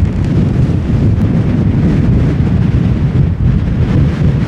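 Strong wind buffeting the microphone: a loud, continuous, deep rumble.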